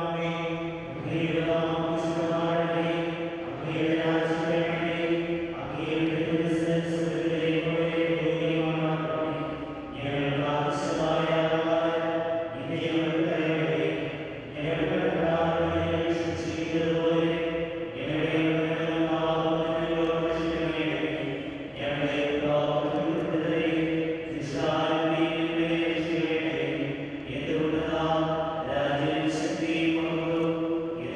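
A priest chanting a liturgical prayer in a low male voice, holding long notes in phrases of about two seconds with short breaks between.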